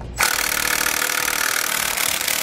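Cordless impact wrench hammering steadily on a brake backing-plate mounting bolt to break it loose. It starts a moment in and keeps running.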